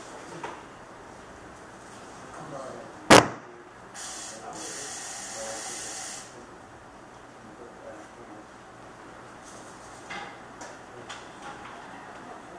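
A single sharp click about three seconds in, the loudest sound, followed a second later by about two seconds of steady high hiss, with light handling clatter afterwards.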